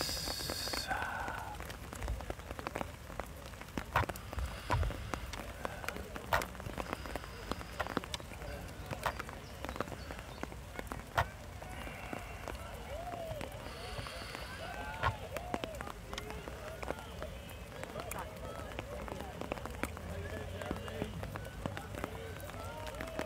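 Faint distant voices over steady outdoor background noise, with scattered short, sharp clicks throughout.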